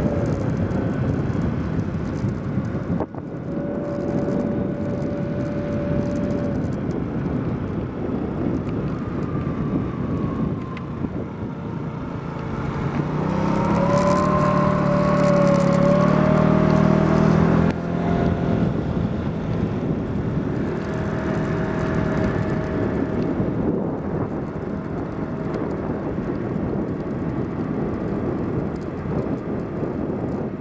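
Moped engine running while riding, its note mixed with wind rush on the microphone. About 13 s in, the engine note rises and grows louder, then drops suddenly near 18 s.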